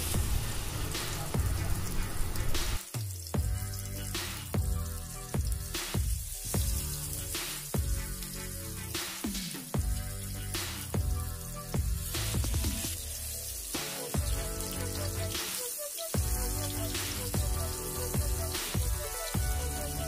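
Masala-marinated seer fish slices sizzling as they shallow-fry in hot oil in a pan, a steady crackling hiss, under background music with a regular beat.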